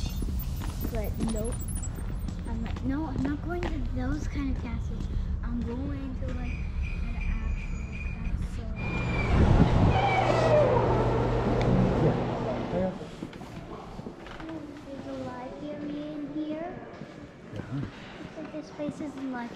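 Indistinct voices of people talking, some high-pitched, with no clear words. From about nine to thirteen seconds in, a louder rush of noise with a low steady hum comes and goes.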